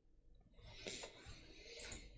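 Near silence: room tone, with a few faint, brief noises about a second in and again near the end.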